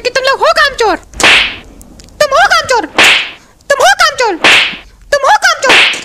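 Cartoon beating sound effects: a short high-pitched cry followed by a whip-like swish, repeated four times about every second and a half.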